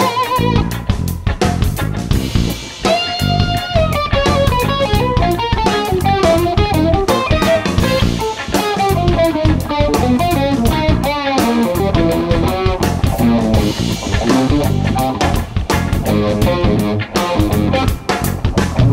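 Instrumental psychedelic funk-rock band playing: an electric guitar winds through a melodic lead line over electric bass and a drum kit.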